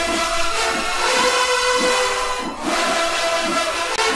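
Marching band brass holding long, loud sustained chords.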